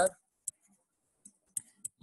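A few faint, scattered clicks and taps of a stylus on a pen tablet during handwriting.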